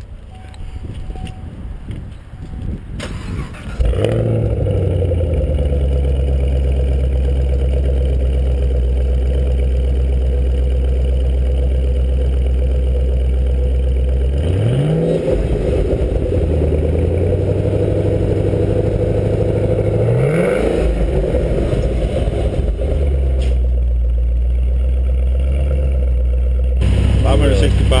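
Supercharged 6.2-litre LSA V8 of a 2012 Chevrolet Camaro ZL1 firing up about four seconds in and settling into a loud, steady idle. It is given two short throttle blips, near the middle and again a few seconds later, each rising and dropping straight back to idle.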